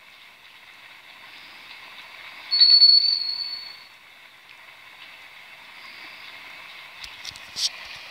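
Steady hiss of falling rain, with a single high ring of a shop door bell about two and a half seconds in, fading over a second or so. A few light clicks near the end.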